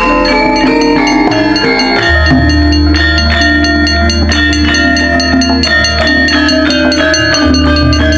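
Javanese gamelan playing: tuned metal bars struck in a quick, dense running pattern, with a deep held tone coming in about two seconds in.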